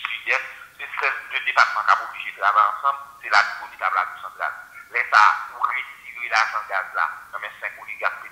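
Continuous speech, with the thin, tinny quality of a voice heard over a phone or radio line.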